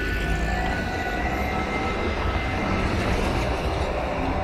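Busy city street ambience: a steady low rumble with a few faint held tones above it that fade out near the end.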